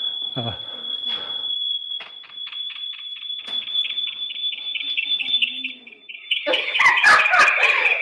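Microphone feedback: a loud, high, steady whistle that starts pulsing several times a second about two seconds in, then jumps to a slightly lower, louder pitch about six seconds in.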